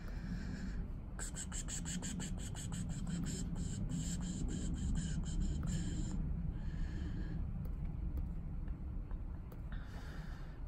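Low, steady rumble of a diesel school bus idling. From about a second in to about six seconds in, a rapid series of sharp clicks runs over it, about four a second.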